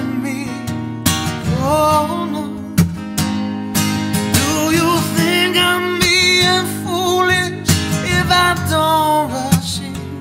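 A man singing with held, wavering notes while strumming an acoustic guitar.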